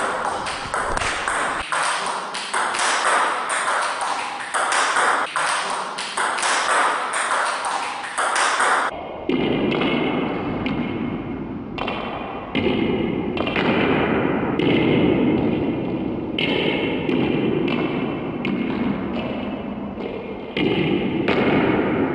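Table tennis ball hits, several a second, on rubber paddle and table as backhand topspin loops are played against fed backspin balls. About nine seconds in the hits turn duller and fuller.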